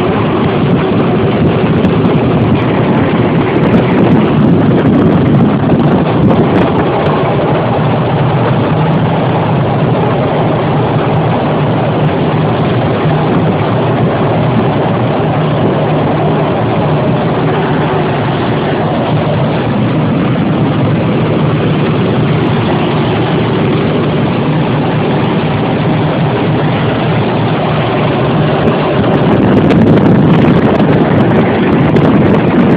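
Semi-truck's engine running steadily at highway speed, heard from inside the cab, with a constant rush of wind and road noise; it grows a little louder near the end.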